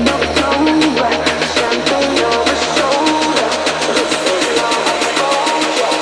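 Music without vocals: a steady fast beat over a heavy bass line and a melody.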